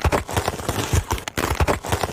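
Chunks of ice sliding off a steel plate into a plastic tub, with scraping and a quick run of clattering knocks as the pieces land.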